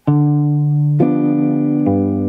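Archtop jazz guitar played in an alternating-bass rhythm on a G7 chord. It opens on a single bass note, the fifth of G7, a chord is struck about a second in, and the bass then steps down to a lower note near the end.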